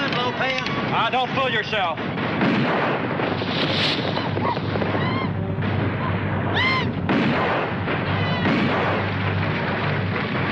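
Film battle soundtrack: a dense, steady din of gunfire, with men's shouts and yells rising over it several times.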